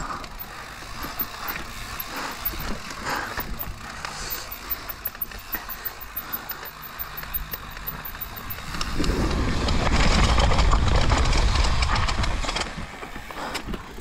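Mountain bike descending a rocky dirt trail: tyres rolling over dirt and rock, with the chain and frame rattling in a stream of irregular clicks. From about nine seconds in, a louder rushing rumble takes over for a few seconds, then eases near the end.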